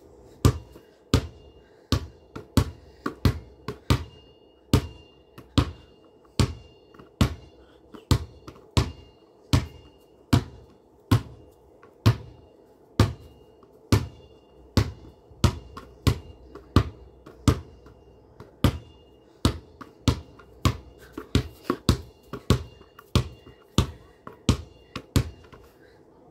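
A basketball being bounced over and over by hand, about one bounce every two-thirds of a second. Each bounce is a sharp slap, many with a brief high ping after it, and the bounces come quicker near the end.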